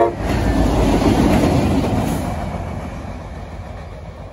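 Two CSX EMD diesel locomotives, a GP40-3 and a GP38-3, running light past and away, their engines and wheels on the rails fading steadily as they recede. The horn cuts off right at the start.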